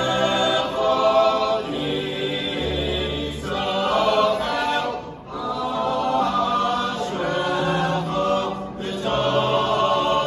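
A men's choir singing a cappella in harmony, holding long chords over low bass notes, with a brief break about five seconds in.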